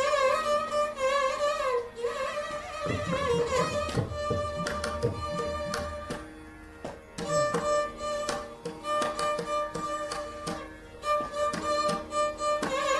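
Carnatic concert music in raga Kalyani: a violin plays a melody of sliding, ornamented phrases and held notes over mridangam strokes, with a softer stretch about halfway through.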